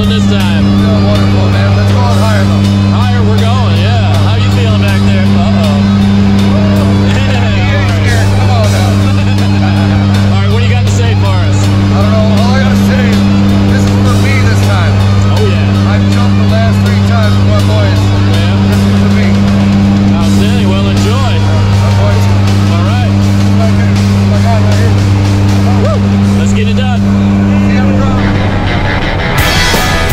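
Loud, steady drone of a skydiving jump plane's engines and propellers heard from inside the cabin during the climb, with indistinct voices over it.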